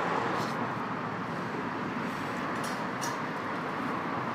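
Steady hum of road traffic on a street, with no single vehicle standing out.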